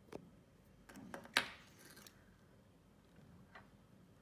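A few light metallic clicks and taps as a hard disk's removed read/write head arm is handled and set down on a wooden desk, the sharpest click about a second and a half in.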